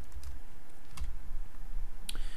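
Computer keyboard typing: a few separate keystrokes over a steady low hum.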